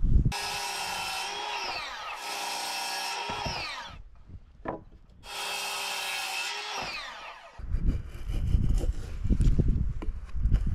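Ryobi circular saw cutting through a pine board in two passes, each a few seconds of steady motor whine with the blade in the wood, ending in a falling whine as the motor winds down after the trigger is released. Near the end, irregular knocking and rubbing of wood.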